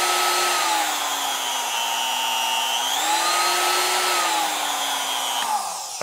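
Cheap brushed-motor palm router running with no bit load, its steady whine dropping in pitch and climbing back twice as a dimmer-type speed controller is turned between low and high. Near the end it is switched off and the whine falls away as the motor spins down.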